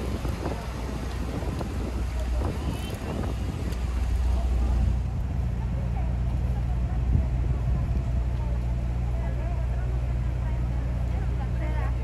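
Street traffic noise: a vehicle drives past on wet pavement in the first few seconds, then a steady low engine drone from idling vehicles, with faint voices of people in the background.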